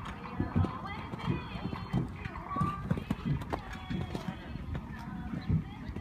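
Horse's hooves thudding on the sand arena footing in a canter, a loose run of dull beats.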